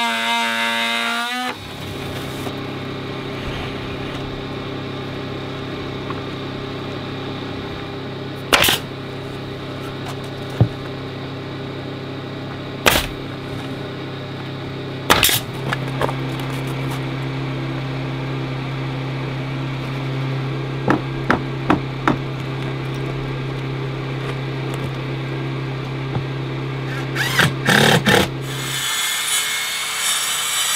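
Air compressor motor running with a steady hum while a pneumatic nail gun fires sharp single shots several seconds apart, then quick runs of shots near the end, as siding boards are nailed up. The hum cuts off shortly before the end.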